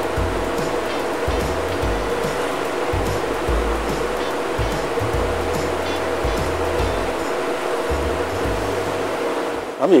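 Steady rush of wind and churning sea from a cruise ship's wake, with a steady low drone and wind buffeting the microphone on and off.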